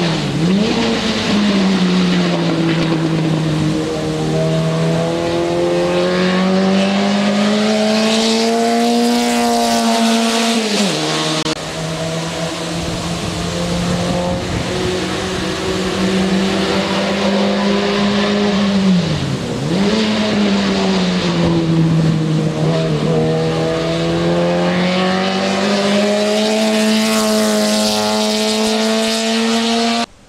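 Fiat 600-bodied TC 850 race car lapping at speed, its small four-cylinder engine holding a high note that climbs steadily through the revs. The pitch drops sharply three times, about a second in, near eleven seconds and near twenty seconds, as the engine comes off the throttle before pulling up again.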